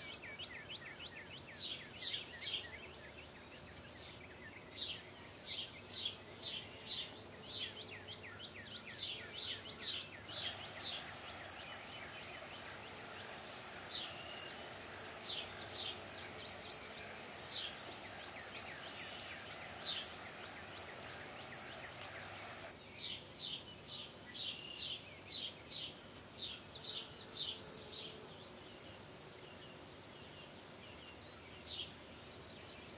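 Steady high-pitched drone of an insect chorus, with short crisp crunches coming about twice a second: footsteps through dry leaf litter. A soft hiss joins in from about ten seconds in and stops abruptly near twenty-three seconds, while the steps thin out.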